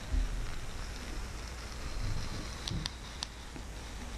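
Masking tape being peeled slowly off a painted acrylic sheet: a soft, continuous rustling crackle, with a low bump at the start and a few sharper ticks about three seconds in.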